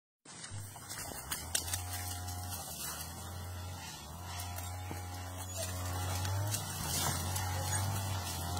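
Dog making repeated wavering whines with a few sharp yaps, excited at an animal it is trying to reach up a banana plant, over a steady low hum.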